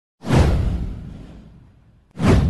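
A whoosh sound effect with a deep low impact under it: it starts suddenly about a quarter-second in, sweeps down in pitch and fades away over about a second and a half.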